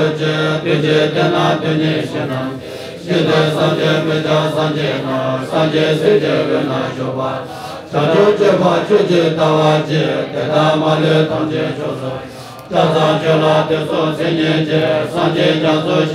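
Tibetan Buddhist prayer chanting: voices reciting a mantra in a steady, droning chant, in phrases of about five seconds, each broken by a short pause for breath.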